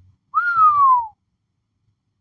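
A person whistling one short note that lifts briefly and then slides down in pitch, lasting under a second.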